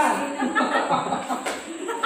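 People laughing and chuckling, mixed with a little talk.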